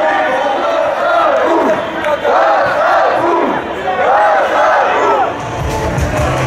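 A large crowd of marchers shouting a slogan together, the chanted phrase repeating in rhythmic rising-and-falling calls.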